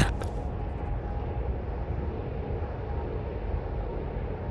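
Steady low rumbling ambience with a faint steady hum.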